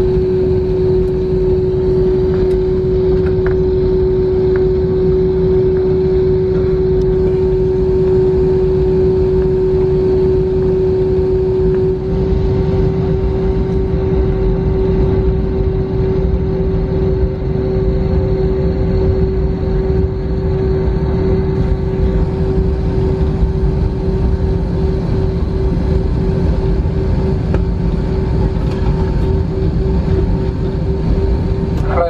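Cabin noise of an Airbus A321 taxiing: a steady deep rumble from the engines and airframe, with a constant hum held at one pitch that starts to waver slightly about halfway through.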